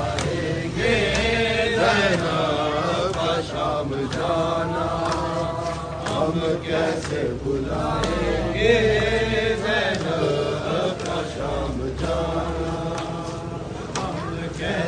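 Men's voices chanting a noha, a Shia mourning lament, in long held sung lines that waver in pitch, carried on without a break.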